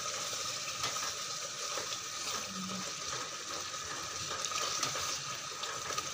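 Creamy chicken curry simmering in a non-stick pan just after cream is added: a steady bubbling hiss with a few soft spatula strokes as it is stirred.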